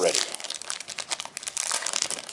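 Foil wrapper of a Pokémon Next Destinies booster pack crinkling with a rapid run of crackles as it is handled and torn open.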